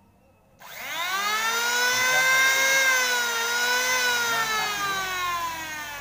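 Electric angle grinder switched on about half a second in: its motor spins up with a quickly rising whine, runs steadily, then slowly winds down with falling pitch over the last two seconds. It runs on a 450 VA household meter through a capacitor bank without the supply tripping.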